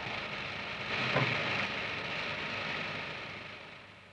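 Steady hiss of an old film soundtrack with no voice on it. There is a faint brief sound a little over a second in, and the hiss fades away near the end.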